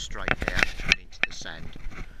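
A man talking, mixed with sharp clicks and scrapes in the first second.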